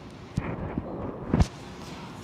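Two dull, low thumps about a second apart, the second louder, over a faint low rumble.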